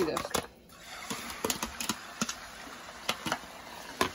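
Beaten eggs poured into hot oil in a frying pan start to sizzle. From about a second in there is a steady frying hiss with scattered small pops, after a few clicks at the start.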